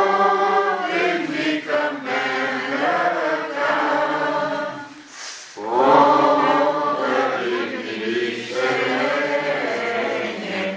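A group of voices singing a hymn without instruments, in long held phrases, with a brief break for breath about five seconds in.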